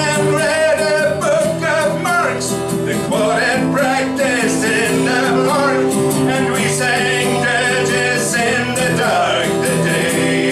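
A man singing live, accompanied by a strummed acoustic guitar, in a folk-rock song.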